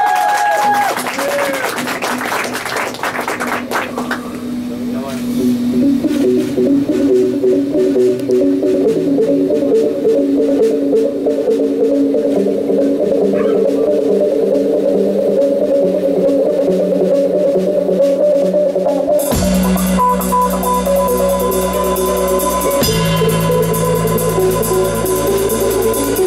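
Live rock band: an electric guitar opens the song with slow, held notes that grow louder about four seconds in. About nineteen seconds in, the drum kit and a deep bass line come in, with cymbals.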